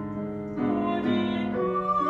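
A woman singing in a classical, operatic style with vibrato, accompanied by a grand piano. It is softer for about the first half second, then the voice comes in stronger and holds a long high note near the end.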